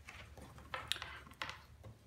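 A few light clicks and taps from cables and plastic connectors being handled on a wooden desk.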